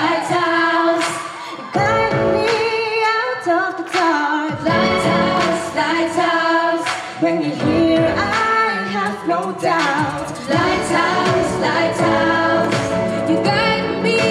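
A cappella vocal group singing a pop song in several-part harmony through microphones, with a low sung bass line and regular sharp percussive hits beneath the lead voices.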